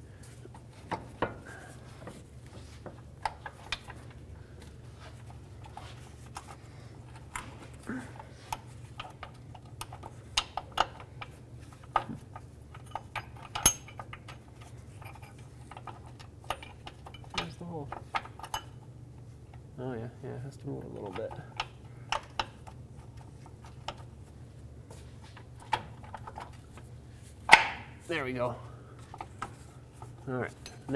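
Scattered light metallic clinks and clicks of steel bolts and a steering rack mounting bracket being handled and started by hand under a car, with one louder clank near the end, over a steady low hum.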